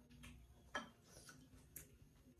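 Close-up eating sounds: a few sharp, quiet clicks and smacks of chewing and wooden chopsticks at the mouth. The loudest comes a little before halfway and another near the end.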